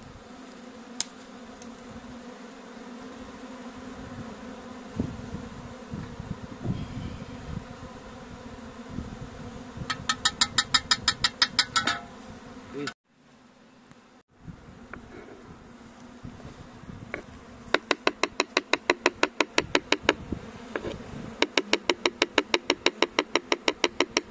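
A honeybee swarm buzzing steadily as it is brought into a hive. Two runs of rapid, even clicking, about seven a second and louder than the buzz, come around the middle and again near the end, and the sound almost drops out for a moment midway.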